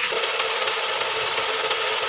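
Portable cylinder boring machine cutting a cylinder bore in a diesel engine block: a steady, even machining noise with no rhythm.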